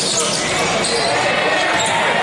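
Live basketball game in an echoing indoor gym: players moving on the hardwood court, with voices calling out during play.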